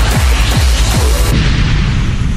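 Extremely fast, distorted speedcore at about 1500 BPM: the kick drums run together into a continuous low buzz, with a falling swoop repeating roughly three times a second. About 1.3 seconds in, the treble cuts away and the sound thins out.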